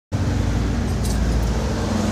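A loud, steady low rumble with a droning hum.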